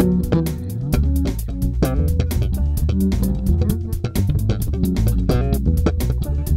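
Music Man StingRay EX electric bass played through an amp in a busy line of quick, changing notes, with sharp percussive clicks several times a second.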